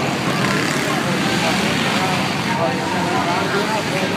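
Several four-stroke dirt bikes racing, their engines revving up and down in pitch, mixed with crowd chatter.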